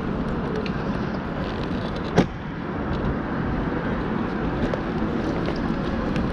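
Steady city street noise with traffic, and one sharp knock about two seconds in.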